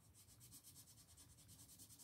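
Faint graphite pencil shading on sketchbook paper, a soft scratching of quick strokes, barely above silence.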